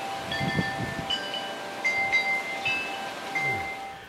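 Wind chimes ringing, metal tones struck at irregular moments and overlapping as they ring on, over a soft hiss of wind.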